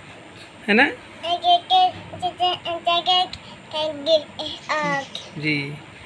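A young child singing a short sing-song run of repeated notes held on the same pitch, then a few more sung notes and a rising vocal glide.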